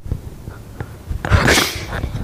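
A young man's short, breathy burst of laughter about a second in.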